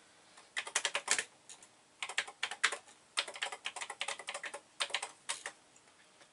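Typing on the TI-99/4A computer's keyboard, entering a file name. The key clicks come in several quick runs with short pauses between them.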